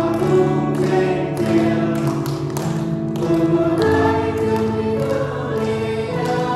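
A small mixed vocal group of women and a man singing a hymn in Iu Mien, with piano accompaniment.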